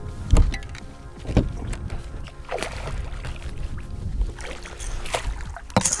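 Sharp knocks and short splashy noises while a hooked bass is fought right beside a bass boat, coming about half a second, a second and a half and two and a half seconds in, then twice near the end, over steady background music.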